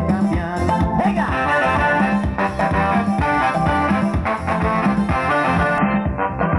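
Upbeat live band music through a PA, keyboard-led, with a steady bass line and beat: an instrumental stretch of a campaign song, with no singing.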